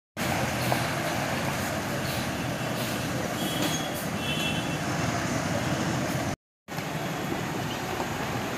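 A bus driving slowly through shallow floodwater: its engine running steadily with water washing around the tyres. The sound cuts out briefly about six and a half seconds in.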